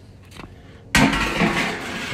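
A stainless steel washing machine drum set down around another steel washer drum. About a second in there is a sudden loud metal clank, followed by about a second of ringing and rattling.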